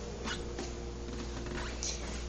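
A cat making a few short, faint meows while begging for food, over a steady low hum.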